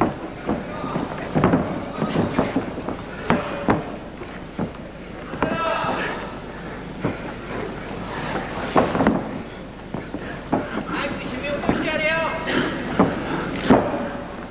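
Single voices shouting in a large hall, with two drawn-out, wavering calls about six and twelve seconds in, over scattered sharp thuds and slaps of bodies on a wrestling mat.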